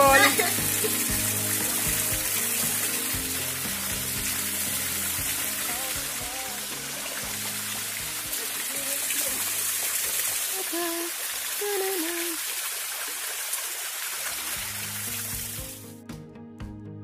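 Small waterfall pouring into a rock pool, a steady rushing hiss, with background music and faint voices under it; the water sound stops abruptly near the end.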